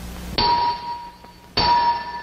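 A short burst of hiss, then two sudden metallic clangs about a second apart, each ringing on and fading, over a low hum. This is a title-card sound effect, one hit for each word of the title as it appears.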